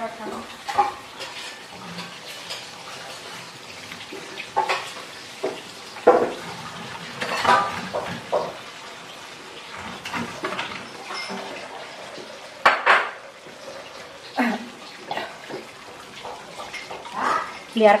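A spatula scraping and knocking against a nonstick wok as pieces of tofu and tempeh are turned in simmering bacem liquid. The clatters come irregularly, every second or two, over a faint steady hiss of the simmering liquid.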